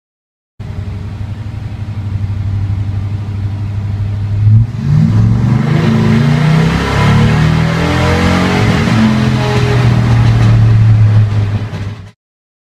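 1996 Chevrolet K1500's L31 5.7-litre V8 pulling hard under acceleration, heard from inside the cab. It grows louder about four and a half seconds in, with the revs climbing and dropping back as the automatic shifts, then cuts off suddenly just before the end.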